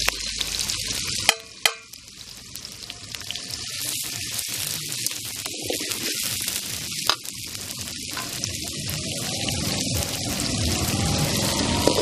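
Sliced small onions and curry leaves sizzling in hot oil in an aluminium kadai, stirred with a perforated steel ladle. Two sharp knocks come about a second and a half in, after which the sizzle drops and gradually builds up again.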